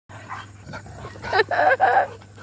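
Dog barking in play, with three short barks in quick succession in the second half.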